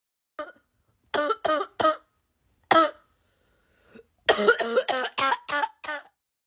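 Short bursts of a person's voice, a few sounds at a time with silent pauses between them, not making out as words; the longest run comes in the second half.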